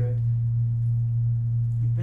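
A steady low electrical hum from the sound system, one unchanging pitch that stays level.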